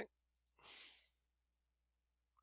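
Two faint clicks, then a man's soft sigh-like exhale lasting about half a second; the rest is near silence.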